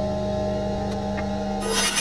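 Bandsaw running with a steady motor hum, then its blade cutting into pallet wood again about one and a half seconds in, with a loud rasping hiss.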